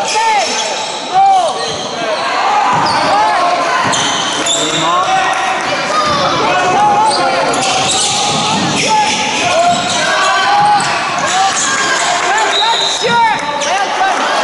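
Basketball shoes squeaking on a sports-hall floor in many short, rising-and-falling chirps as players run and cut, with a ball bouncing and voices calling out.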